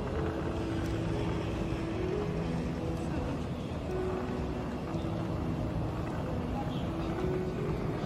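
Steady low rumble of wheeled suitcases rolling across a hard terminal floor, over the constant hum of an airport terminal.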